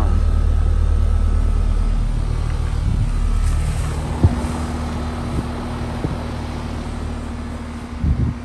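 Carrier Sentry heat pump outdoor unit running in cooling mode: a steady low compressor-and-fan hum that fades over the second half as the microphone moves away from it. A few light knocks come near the middle.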